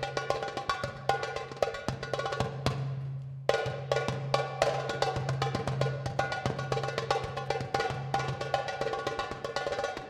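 Darbuka (goblet drum) played by hand in a fast run of strokes over a steady low drone, part of a live Balkan-klezmer band number. The drumming thins out briefly about three seconds in and comes back with a hard stroke.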